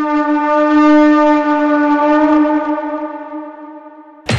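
A single long horn note held at one steady pitch, loudest about a second in and then fading away toward the end.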